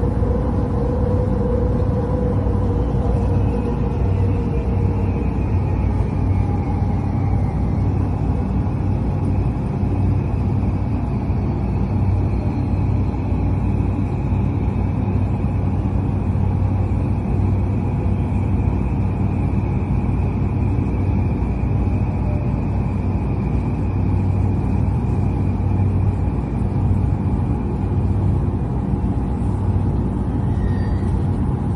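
Steady rumble of a JR Yamanote Line commuter train running, heard from inside the passenger car, with a low hum and a faint high whine through most of it.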